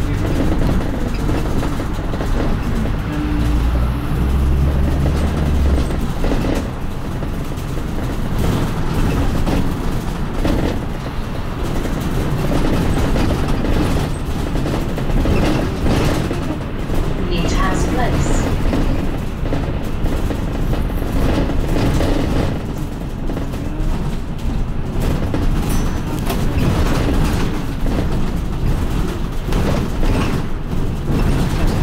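Interior noise of a London double-decker bus in motion heard from the upper deck: engine and road noise with rattling of the body. A deep steady drone sounds from about three to six seconds in, and a brief wavering whine comes a little past the middle.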